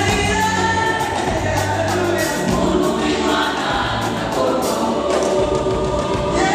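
Mixed choir of men's and women's voices singing a gospel song through microphones, with a band's bass notes and drum beats underneath.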